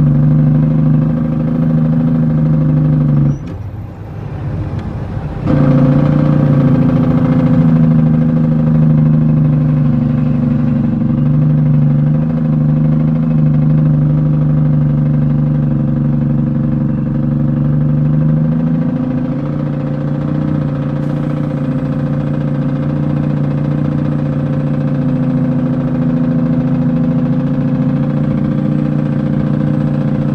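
International 9400 heavy truck's diesel engine running steadily under load, heard from inside the cab. About three seconds in the engine note drops away for roughly two seconds, then picks up again.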